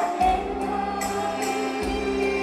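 A group of women singing in chorus over an instrumental backing track, with long held notes and a light percussion hit roughly once a second.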